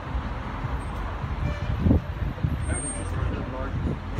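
Background chatter of people talking over a steady low rumble.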